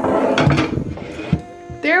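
A small shelf unit knocking and scraping as it is set into an under-sink cabinet, with a sharp knock at the start and another about a second later, over background music.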